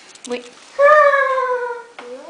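A single drawn-out, meow-like cry lasting about a second, starting a little under a second in and sliding slowly down in pitch.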